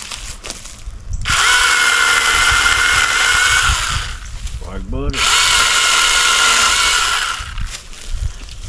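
A cordless brushless 6-inch mini chainsaw running in two bursts of about three seconds each with a steady high whine, held against small limbs to cut through them.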